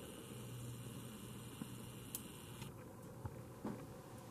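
Faint whir of a camcorder's zoom motor as the lens zooms in, cutting off about two-thirds of the way through, over a low steady hum and a few faint clicks.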